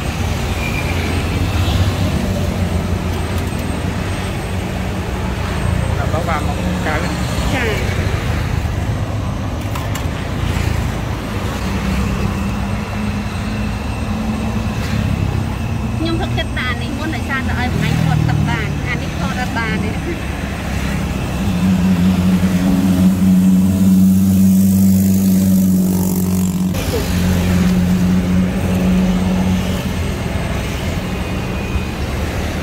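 Road traffic: a steady low rumble of passing vehicles. A louder engine hum comes in about two-thirds of the way through and holds for about five seconds before dropping away.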